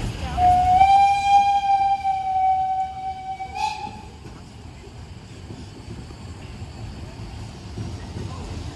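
Narrow-gauge steam locomotive whistle: one long blast of about three and a half seconds, rising slightly in pitch at the start and ending abruptly with a short burst of noise, as the train pulls out. Afterwards the low rumble of the coaches rolling by carries on.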